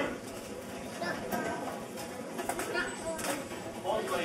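Murmured chatter of a seated audience in a hall: several voices talking quietly and overlapping, with a brief louder sound right at the start.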